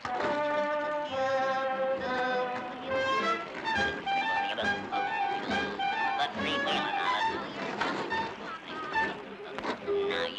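Orchestral cartoon score led by brass, a lively melody of quickly changing notes.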